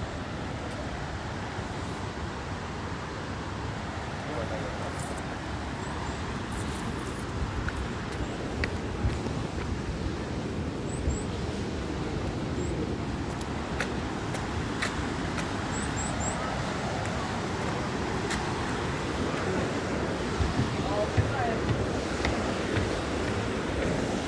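Footsteps of someone walking on paving and then climbing wooden stairs, the steps sharper and louder near the end, over a steady rushing outdoor background noise.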